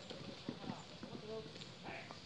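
Footsteps of soldiers' boots on a paved road, scattered and irregular, with faint murmuring voices.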